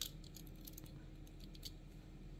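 Faint, irregular light clicks of a die-cast toy fire truck with metal and plastic parts being handled and turned over in the fingers.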